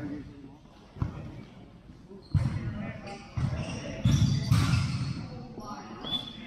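A futsal ball being kicked and bouncing on a tile sport-court floor, several sharp thuds a second or so apart, with players shouting over them.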